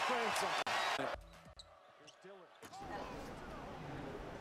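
Basketball game highlight audio: an arena crowd cheering under a broadcast commentator's voice cuts off abruptly about a second in. After a brief quiet gap, a basketball is heard bouncing on the hardwood court against quieter arena noise.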